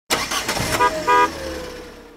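A vehicle horn giving two short toots about a second in, after a burst of noise at the start, the last tone fading away.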